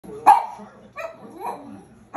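A Boston Terrier gives one loud, sharp bark about a quarter second in, followed by a couple of fainter, shorter sounds.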